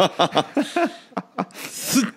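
Men laughing in quick chuckles, ending in a hissing breath near the end.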